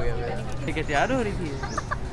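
A young woman laughing: one falling, voice-like burst about a second in, then a few short quick pulses near the end.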